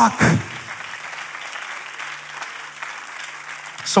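Congregation applauding in a large hall, an even spread of clapping lasting about three seconds, with a faint low steady hum underneath.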